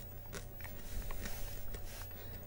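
Popcorn being chewed close to the microphone: irregular small crunches.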